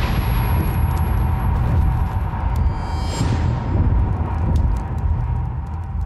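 Trailer score under the title card: a deep, continuous rumbling drone with a steady high tone held over it, and a swelling whoosh about three seconds in.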